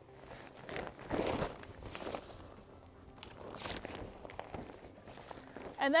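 Large fabric tent wall rustling and flapping in irregular bursts as it is unfolded and shaken out by hand.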